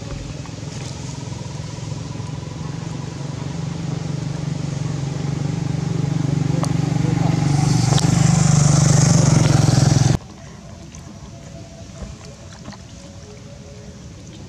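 A steady low engine hum of a motor vehicle that grows louder for about ten seconds, with a hiss building near the end, then cuts off suddenly.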